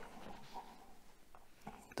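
Faint room noise in a pause in the talk, with speech starting again at the very end.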